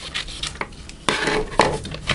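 Scissors cutting a sheet of paper: a few short cuts, then a metallic clatter near the end as the scissors are put down on the desk.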